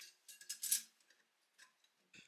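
A few light metallic clicks and clinks in the first second as the stainless-steel rotisserie cage is handled.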